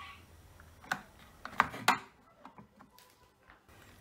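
Plastic clicks as the fabric softener level indicator, a small plastic cap, is pressed back onto its post in a Candy washing machine's removed detergent drawer: a few sharp clicks between about one and two seconds in, with fainter ticks after.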